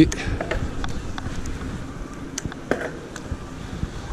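Electric mountain bike ridden on a paved lane: a low steady rumble of tyres and wind on the microphone, with scattered light clicks and rattles from the bike.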